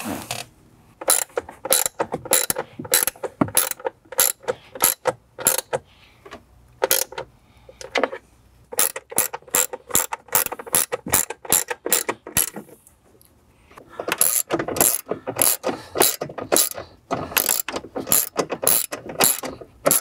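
Hand ratchet clicking in runs as speaker mounting screws are tightened after being hand-started, with a short pause partway through.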